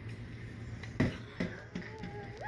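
Steady arcade hum with a sharp knock about a second in and a softer one just after.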